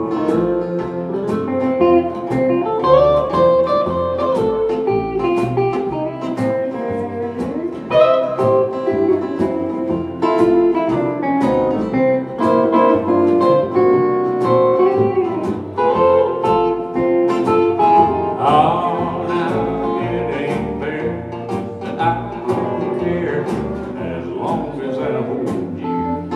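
Live country band playing an instrumental break: an electric guitar takes a lead solo over strummed acoustic guitar, bass and a steady beat.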